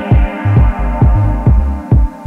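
Lo-fi electronic dance track: a steady four-on-the-floor kick drum about twice a second, with a deep pulsing synth bass between the kicks under a sustained synth chord.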